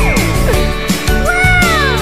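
Background music with a steady beat, laid with cartoon sound effects: a falling glide near the start and a pitched tone that rises and then falls in an arch in the second half.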